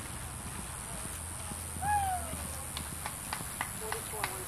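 Haflinger pony cantering, its hoofbeats heard as a run of short sharp clicks, about four a second, in the second half. A short falling voice call comes about two seconds in.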